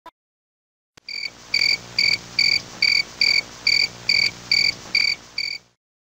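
A high-pitched chirp repeated evenly about two and a half times a second, roughly ten times, starting about a second in and cutting off shortly before the end, over a faint low hum.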